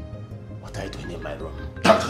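Film soundtrack: background music with a steady low drone and high ringing chime-like tones, under voices, broken by a sudden loud burst just before the end.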